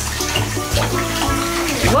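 Bath water sloshing around a child sitting and moving in a bathtub, over background music with a steady bass line.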